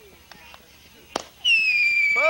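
A whistling firework going off: faint crackling, a sharp pop a little past one second in, then a loud, steady, shrill whistle that starts about a second and a half in and drops slightly in pitch.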